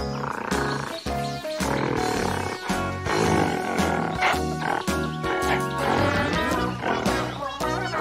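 Upbeat children's background music with a steady bass beat, overlaid by animal roar sound effects that come several times.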